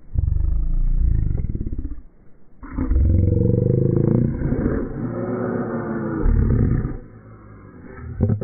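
Loud, drawn-out animal-like roaring and growling in two long stretches, the first about two seconds long and the second lasting from about two and a half to seven seconds in.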